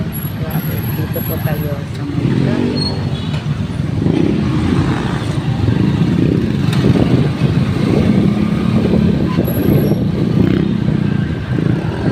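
Riding on a motorcycle through city traffic: the engine runs steadily under heavy road and traffic noise, which gets louder about four seconds in.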